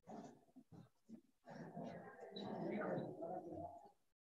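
Faint, indistinct voices in the room, broken up by the video-call audio cutting in and out, with a few complete dropouts to silence.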